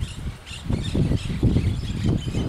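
Wind buffeting the microphone in an open field, an uneven low rumble, with faint bird chirps above it.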